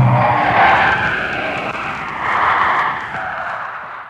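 Audience applauding, heard on an old 1930s broadcast recording; the applause swells twice and fades, cutting off at the end. The song's final held note is still sounding at the very start.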